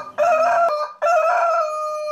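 Rooster crowing: a short opening phrase, a brief break, then one long held final note.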